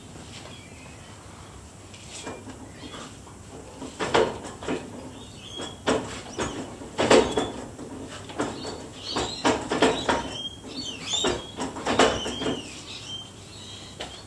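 Irregular mechanical clunks and knocks as a 1991 Suzuki Vitara's carburetted petrol engine is turned over slowly by hand through a jacked-up rear wheel in gear. The ignition is off, so the engine draws in fuel-air mix without firing. The knocks begin about two seconds in, and a few high chirps sound in the second half.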